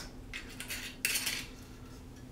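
Glass bottles and a metal bar jigger handled on a bar top: a few light knocks, then a sharp clink about a second in that rings briefly.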